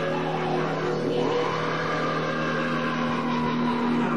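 Live punk band's amplified electric guitar and bass holding a sustained, droning distorted chord, with a higher tone that bends up and back down.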